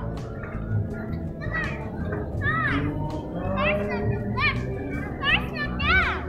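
Young children's high-pitched voices calling and squealing in play, a string of short rising-and-falling cries, with music in the background.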